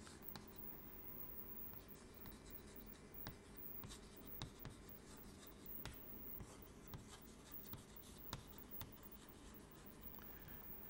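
Chalk writing on a chalkboard, faint: soft scratching with light, irregular taps as each stroke is made.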